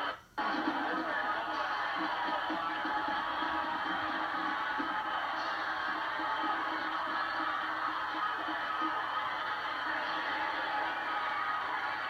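Game-tape sound of a football broadcast played back through a TV, mostly music over a steady background haze; it drops out for a split second just after the start.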